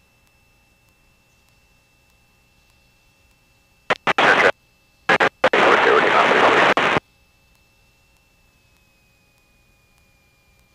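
Aircraft radio receiving a broken, static-filled transmission: a few short bursts that switch on and off about four seconds in, then about two seconds of garbled noise that cuts off suddenly. Between transmissions the feed is nearly silent apart from a faint steady electronic whine.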